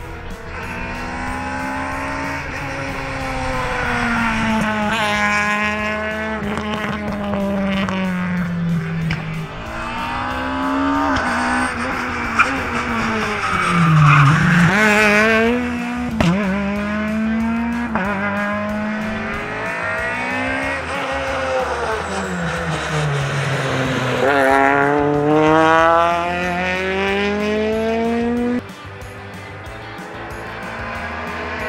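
Peugeot 208 rally car driven hard, its engine pitch climbing through each gear and dropping at every shift, over several passes. The sound falls away suddenly near the end and the car is quieter there.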